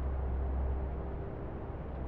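A low, steady hum with a faint hiss over it, swelling up out of silence as the piece opens.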